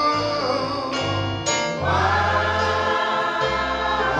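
Gospel praise song with a choir of voices holding long notes over a low instrumental accompaniment, a man singing lead into a microphone; a new held note begins about two seconds in.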